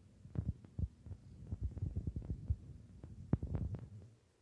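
Handling noise from a phone held close to a plastic blister toy package: irregular low thumps and soft taps, several a second, with a few sharper taps near the end.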